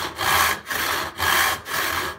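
Handsaw with rip teeth cutting lengthwise along the grain of a board held in a vise, in steady back-and-forth strokes, about two a second.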